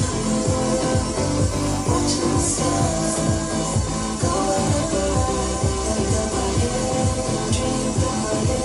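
Music with a steady beat and deep bass, playing from a Sonos speaker system (Play 5, two Play 3s and the SUB subwoofer) in the room.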